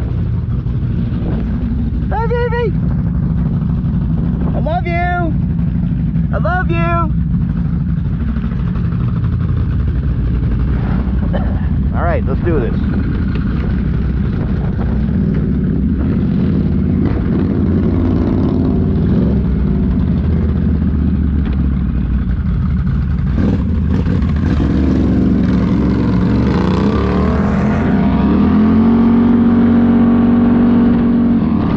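Can-Am Renegade XMR ATV V-twin engines idling steadily. Near the end one revs up and pulls away, its pitch climbing to a steady higher run. A few short high voice sounds come over the idle in the first seven seconds.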